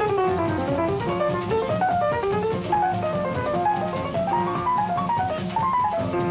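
Uptempo bebop jazz from a quintet of piano, vibraphone, electric guitar, double bass and drums: the piano plays fast single-note runs that sweep down and back up over a steady bass and drum rhythm.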